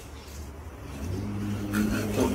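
A motor vehicle's engine, a steady low hum that comes in about a second in and grows louder.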